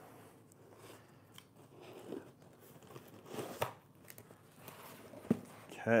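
Cardboard shipping box being opened by hand: scattered rustling, crinkling and tearing of cardboard and packing, with a louder crackle about three and a half seconds in.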